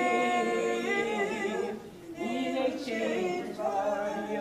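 Unaccompanied singing: long held notes with a short break about two seconds in.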